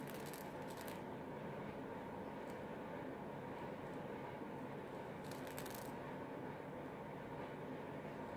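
Faint clicks of a beading needle scooping seed beads in a plastic bead tray, in two short clusters near the start and about five seconds in, over a steady room hum.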